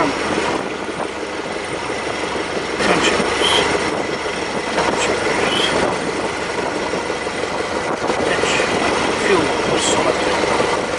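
Stampe SV4B biplane's engine running steadily, heard from the open cockpit, getting a little louder about three seconds in. A couple of short high squeaks come through over it.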